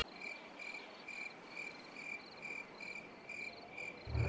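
A cricket chirping faintly and steadily, about two short high chirps a second.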